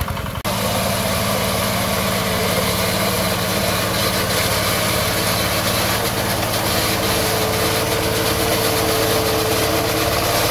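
Micromec mini rice combine harvester running steadily under load as it cuts and threshes rice, engine hum mixed with the clatter of the machine. There is a brief break about half a second in, and a steady whine joins from about seven seconds.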